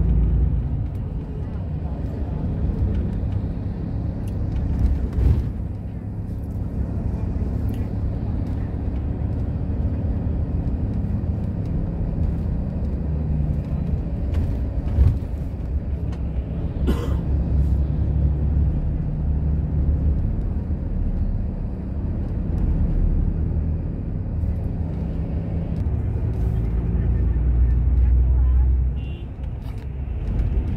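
Low, steady rumble of a moving road vehicle heard from inside, engine and road noise, with a few short knocks along the way and a drop in level near the end.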